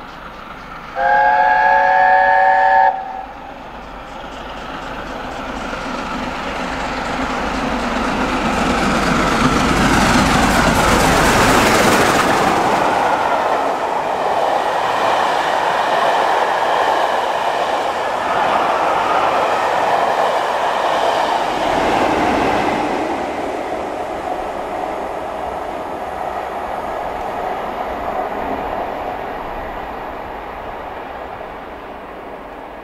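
LNER A4 steam locomotive 4498 Sir Nigel Gresley sounding its chime whistle once, a chord of several notes held for about two seconds. The train then passes at speed: a rush that builds to its loudest about ten seconds in, then the coaches rolling by and fading away.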